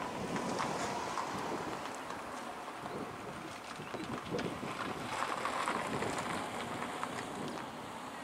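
Wind buffeting the microphone outdoors, an uneven rushing that swells and eases.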